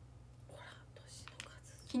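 A woman's soft whispered, breathy voice with a few faint mouth clicks, over a low steady hum; she starts speaking aloud at the very end.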